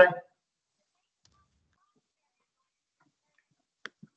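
Near silence after a spoken "OK" at the very start, with no background hiss, broken only by one short, sharp click near the end.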